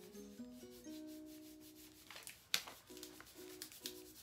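Soft background music with a simple melody of held, stepping notes, over the papery rubbing and crackling of a cold wax strip being worked and peeled apart by hand. A sharp crackle about two and a half seconds in is the loudest sound.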